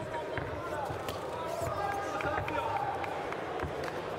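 Arena crowd noise with indistinct shouting and calling from the audience, and a few short knocks.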